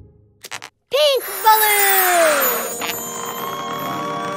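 A cartoon sound effect for a balloon inflating on a baby bottle. It starts about a second in with a short voice-like exclamation, followed by a long descending whistle over a hissing rush. Steady music chords come in near the end.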